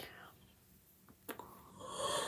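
A person's quiet breathing with a couple of small clicks, then near the end a loud, breathy inhale as a yawn begins.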